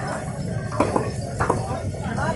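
Puri dough being slapped flat between bare palms: two sharp slaps about half a second apart, over a steady low rumble and background voices.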